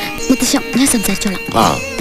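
Voices in a film scene over steady background music, with a short high vocal sound that falls in pitch a little after halfway.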